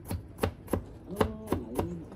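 A cleaver chopping through a wet green slab onto a plastic cutting board: about six sharp chops at a steady pace, roughly three a second.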